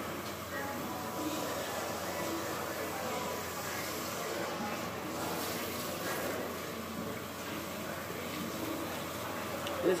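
Salon shampoo-bowl hand sprayer running water over hair and scalp, a steady hiss, with faint voices in the background.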